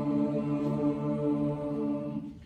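Mixed youth choir singing a long held chord, the voices sustained steadily on one pitch each.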